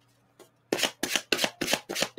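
A tarot deck being shuffled by hand: after a short quiet moment, a quick run of card slaps and rustles, several strokes a second, begins a little under a second in.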